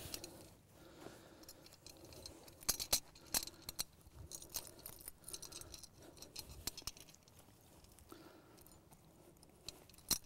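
Faint scraping of dirt and scattered small metallic clicks and jingles as a steel foothold trap and its chain are bedded into loose soil by hand, the loudest clicks about three seconds in.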